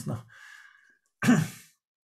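A short, breathy vocal noise from a person, a little over a second in, after a faint breath.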